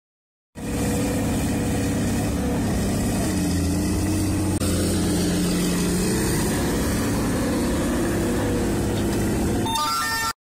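Heavy diesel earthmoving machinery running steadily, with a drifting engine drone and a momentary break about four and a half seconds in. Near the end comes a short run of rising tones.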